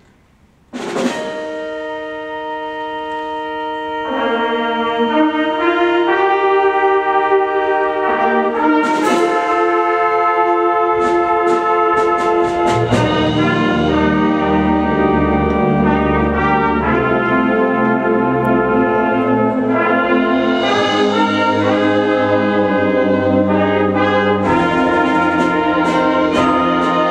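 School concert band starting a piece: a sudden loud accented chord with a hit about a second in, then held brass chords, more instruments joining at about four seconds, and low brass filling in from about halfway to a fuller, louder band sound.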